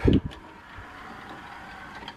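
Sony CDP-CE375 5-CD changer's motorised carousel tray sliding open smoothly, a steady faint whir after a brief thump as the open/close button is pressed.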